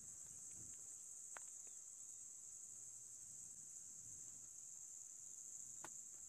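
Faint, steady high-pitched chorus of crickets, with a couple of tiny clicks.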